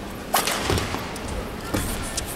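Badminton jump smash: a sharp crack of racket strings on the shuttlecock about a third of a second in, then a second, softer stroke near the end as the rally continues.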